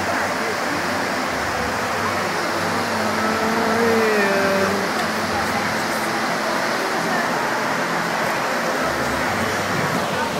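Steady rushing noise of large barn fans, with indistinct voices of people around; a voice comes through faintly about three to five seconds in.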